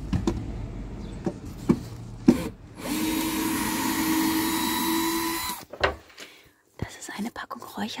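Cordless screwdriver motor running in one steady whine for about two and a half seconds, after a stretch of handling knocks and clicks, as it backs out the screws holding a mouldy wall panel in place.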